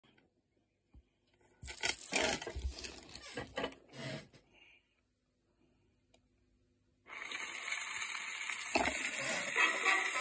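A few seconds of irregular clattering and knocking, then a short pause. About seven seconds in, the steady hiss and crackle of a shellac 78 rpm record's groove starts abruptly, and the dance-band fox-trot begins to sound through it near the end.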